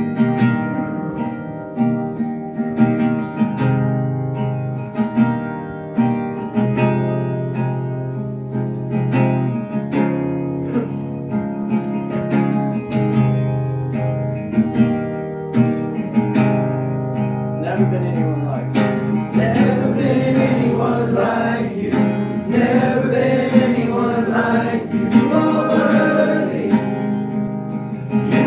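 An acoustic guitar strummed steadily in chords; about 19 seconds in, singing voices join in over it.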